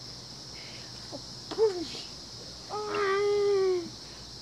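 A young boy's wordless vocalising: a short call about halfway through, then a long drawn-out call, sliding slowly down in pitch, near the end. A steady high-pitched hiss runs underneath.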